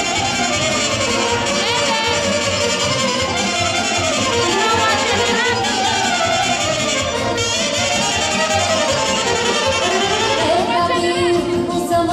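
Live Romanian folk music from the Banat, played by a band with the violin leading in sliding, ornamented lines.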